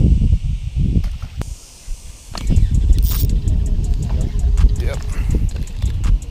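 Wind buffeting the microphone with a low rumble, and water splashing as a small hooked largemouth bass thrashes at the surface by the bank.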